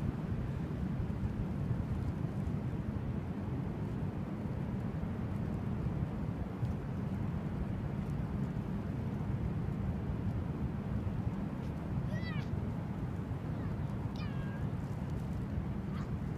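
Steady low rush of wind and breaking ocean surf, with two short high calls near the end.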